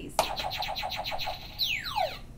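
Tabletop quiz answer buzzer pressed, playing an electronic sound effect: a rapid pulsing tone, about ten pulses a second for just over a second, then a falling whistle-like glide near the end.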